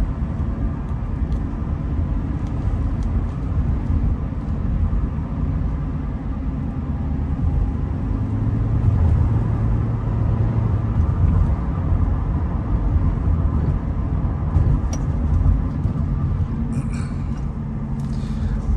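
Cabin noise inside a 2001 Nissan Maxima GLE on the move: a steady low rumble of its V6 engine and tyres on the road. It grows a little louder for a couple of seconds about halfway through.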